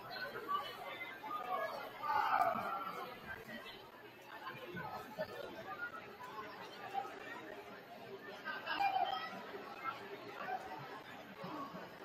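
Indistinct chatter of several people talking at once in a large gymnasium, with no single voice clear.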